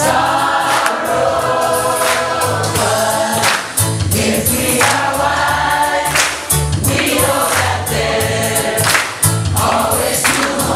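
Music with a choir singing over a bass line and beat.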